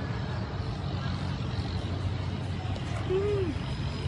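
Steady low rumble of city traffic and street noise, with a short rising-then-falling vocal sound about three seconds in.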